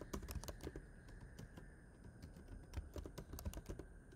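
Computer keyboard being typed on: faint, quick, irregular key clicks as code is entered.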